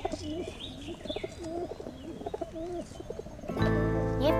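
Pigeon cooing in short, repeated wavering notes, with faint higher chirps. Music comes in just before the end.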